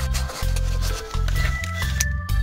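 Background music with a steady, repeating bass line and sustained higher notes.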